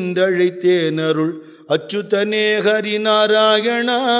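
A man singing a devotional chant, holding long notes that waver and bend in pitch, with a short break for breath about a second and a half in.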